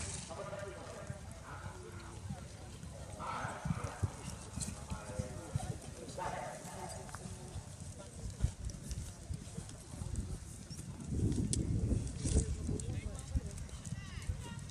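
A ridden horse's hooves clip-clopping on a gravel path, with distant voices in the first half and a louder low rumbling near the end.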